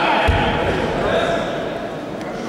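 Voices calling out in a large sports hall, with one dull thud a little after the start.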